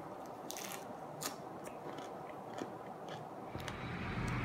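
Biting into and chewing a raw Swiss chard leaf wrapped around tomato: a string of small, irregular crisp crunches, the loudest about half a second and a second and a quarter in. A low steady background hum comes in near the end.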